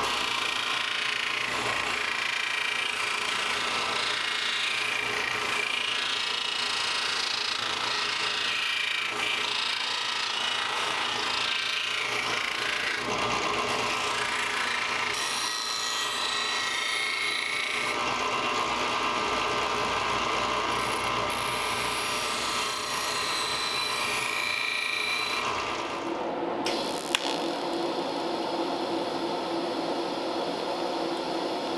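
Bench disc sander running while a steel piece is pressed against its abrasive disc, its pitch shifting as the work is loaded on and eased off. About 26 seconds in it cuts off suddenly and gives way to a different steady sound, the hiss and buzz of a TIG welding arc.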